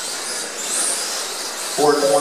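Kyosho Mini-Z 1:28-scale electric RC cars racing, their small motors giving a high whine that rises and falls in pitch. A man's voice starts near the end.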